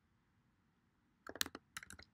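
Computer keyboard being typed on: a quiet moment, then a quick run of keystroke clicks a little past halfway through.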